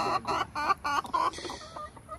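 Hens clucking in a nest box: a quick run of short clucks over the first second or so, then softer, sparser calls.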